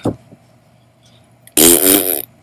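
A woman blowing a loud raspberry with her tongue out between her lips, one short rasping burst about a second and a half in.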